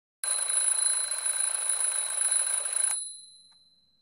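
Mechanical twin-bell alarm clock ringing: a loud, rattling ring that starts a moment in and stops after about three seconds, leaving a high ring fading out.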